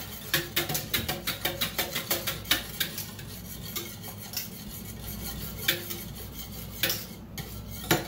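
A metal utensil stirring milk in a stainless steel pot: quick, repeated clinks and scrapes against the pot wall, thinning out to scattered clinks after about three seconds. The milk is being stirred as it cools toward culturing temperature for yogurt.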